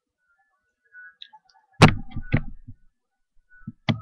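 A loud thump close to the microphone about two seconds in, followed by a few softer knocks over the next two seconds.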